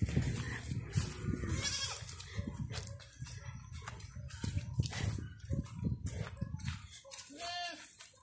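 Young goat bleating, a wavering call about two seconds in and another near the end, over footsteps through grass and a low rumble of handling noise on the microphone.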